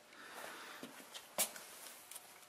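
Faint shuffling and handling noise with one sharp click a little after halfway through.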